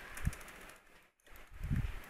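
Computer keyboard typing: scattered key clicks as a word is backspaced and retyped, with a couple of dull low thuds among them.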